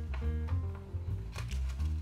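Background music with held notes over a steady bass. A few brief crinkles of origami paper come through as a creased square of kami is pressed together and collapsed along its folds.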